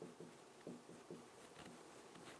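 Faint handwriting on a board: a pen making a quick, irregular run of short strokes.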